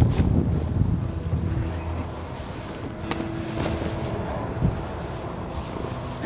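Wind buffeting the microphone, loudest in the first two seconds, with rustling and a few light knocks from saddle and tack as a rider climbs onto a saddled mule.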